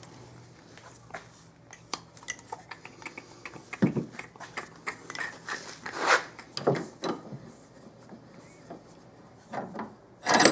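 Handling noises of the throttle body being packed in cloth rags and clamped in a bench vise: scattered small clicks, scrapes and cloth rustles, with a few louder knocks about four, six and seven seconds in.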